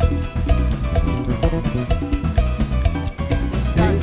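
A live band playing up-tempo music with the drum kit heard close up, keeping a steady beat of sharp strokes under sustained instruments.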